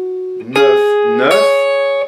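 Electric guitar playing single notes slowly, one at a time. A held note on the G string fades out, then new notes are picked about half a second in and again just over a second in, and ring to the end. A man's voice briefly calls out a fret number over the playing.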